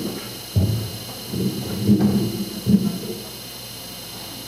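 Handling noise from a handheld microphone being fitted into its stand clip: a few dull thumps and rubbing picked up by the microphone itself.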